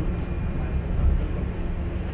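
Steady low drone of a city bus riding along, heard from inside the passenger cabin.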